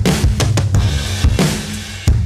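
Background music with a steady drum-kit beat and bass.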